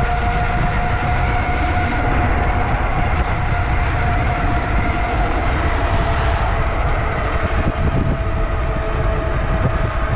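Ariel Rider D-Class e-bike riding at speed: the electric hub motor gives a steady whine, which sinks slightly in pitch near the end, over heavy wind rumble on the handlebar-mounted microphone. A passing van adds a brief rush about six seconds in.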